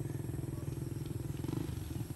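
An engine idling steadily nearby: a low drone with a fast, even pulse.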